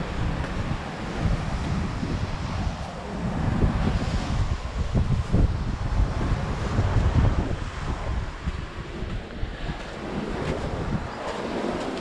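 Wind buffeting the microphone in a low, uneven rumble, with surf washing on the shore behind it.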